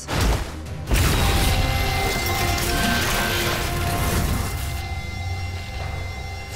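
Dramatic film score under action-scene sound effects. A sharp hit comes right at the start, then a heavy crash about a second in that runs on as a dense rumble for several seconds while the music continues.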